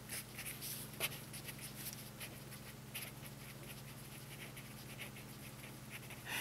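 Felt-tip marker writing on a paper pad: a run of short, faint scratching strokes as words are lettered. A faint steady low hum lies underneath.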